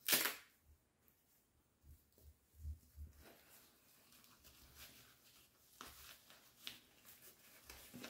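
Handling of a black fabric shooting rest bag: a short scratchy rustle right at the start, then faint, scattered rustling of the cloth and a few soft taps as its fill opening is worked open.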